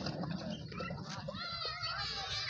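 A camel's low, rough grumbling call, with faint voices in the background.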